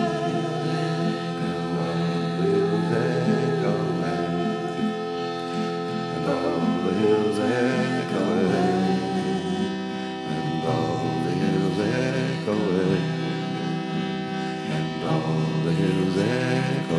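Harmonium holding a steady droning chord under several voices singing together, the voices wavering in pitch and swelling in and out over the drone.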